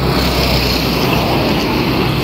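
A motor vehicle passing close by on the road: a steady rush of engine and tyre noise.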